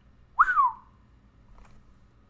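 A man whistles once through pursed lips, a short note that rises and then slides down, about half a second in. It is a whistle of astonishment at a figure he finds mind-boggling.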